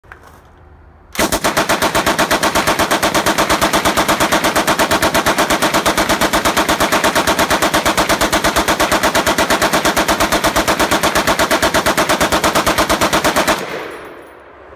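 M60 machine gun in 7.62 NATO firing on full auto, emptying a full 100-round belt in one continuous burst of about eight shots a second. The burst starts about a second in and stops just before the end.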